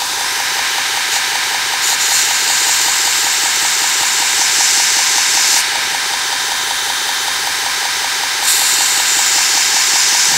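2x72 belt grinder running at about a quarter speed while a steel drill bit's cutting edge is ground against the abrasive belt. The hiss of steel on the belt comes in two passes, from about two seconds in to past five seconds and again near the end, over the steady running of the grinder.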